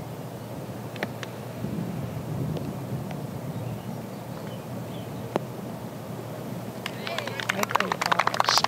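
A golf iron strikes the ball off the fairway with a sharp click about a second in, then steady outdoor wind ambience while the ball is in flight. A single knock comes about five seconds in, and a few sharp clicks near the end.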